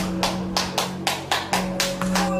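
A quick, even series of hand claps, about four a second, over steady background music: the hourly clap that signals prisoners packed onto a cell floor to turn over.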